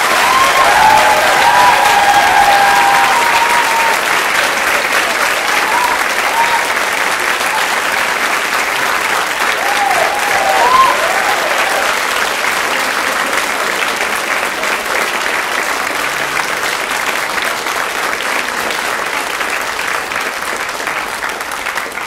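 An audience applauding at length, with a few cheers near the start and again about ten seconds in; the clapping is loudest in the first few seconds and eases off slightly toward the end.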